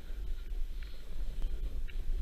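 Wind buffeting an action camera's microphone as a rider slides down a snow slope, a heavy low rumble with the hiss of snow under the rider, and a couple of short high squeaks about one and two seconds in.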